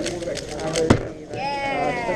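Rapid clicking of a 3x3 speedcube being turned, ending about a second in with one sharp slap as the solve finishes: the cube is put down and the stackmat timer stopped. A drawn-out voice, rising then falling in pitch, follows over chatter in the room.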